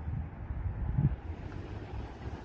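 Low, uneven rumble of wind on the microphone.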